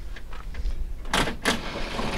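Two short mechanical rattles a little over a second in, as the school bus's hood latch is worked before the hood is lifted, over wind rumbling on the microphone.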